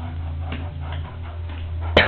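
Irregular light ticks and scuffles from a Staffordshire bull terrier's claws on a hardwood floor as it plays, over a steady low hum. One sharp click sounds just before the end.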